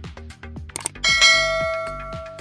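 Notification-bell 'ding' sound effect of a subscribe-button animation, struck about a second in and ringing on as it fades, over background music with a steady beat.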